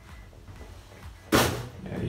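A single sharp knock about a second and a half in, loud and brief, after low handling noise.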